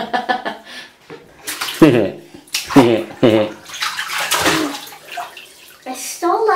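Shallow bath water splashing in a tub as a baby is let down to sit in it, twice, about a second and a half in and again past four seconds, with laughter in between.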